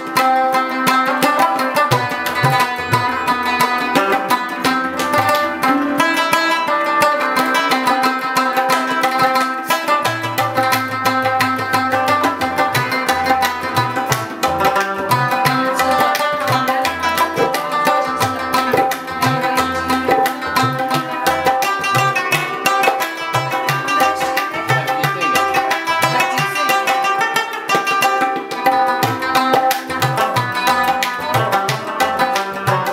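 An Afghan rubab plays a plucked melody, accompanied by tabla in a steady, quick rhythm with deep strokes from the bass drum.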